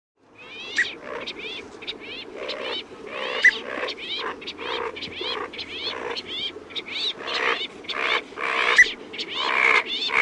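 Birds calling: a steady series of short repeated calls, about three a second, starting after a brief silence.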